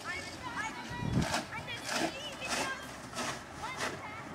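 Distant children's voices calling out high and short, with a regular crunch about twice a second that fits footsteps in packed snow.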